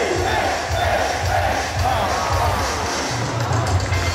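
Baseball player cheer song playing over the stadium loudspeakers, with the crowd of fans cheering along.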